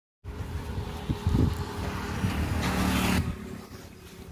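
A motor running with a low rumble and a steady hum. A louder rushing noise joins it for about half a second near three seconds in, then the sound drops back.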